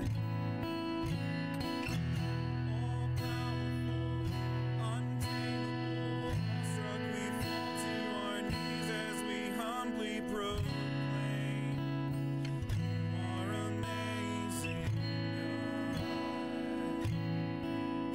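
Acoustic guitar strummed in steady chords, with a man singing a slow worship song over it.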